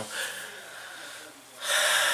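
A man drawing a long, noisy breath about one and a half seconds in, after a faint breath just before it.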